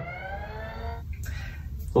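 A sound-effect whine made of several tones, gliding down in pitch over about a second and then fading, as the drill is fitted to the ship.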